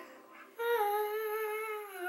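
A child's drawn-out, sung 'ooooh', starting about half a second in and held steady with a slight downward drift in pitch.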